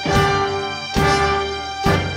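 Live band with brass and drums playing a dramatic background cue from a period-drama TV score: sustained horn chords punctuated by three sharp drum-and-cymbal accents, about a second apart.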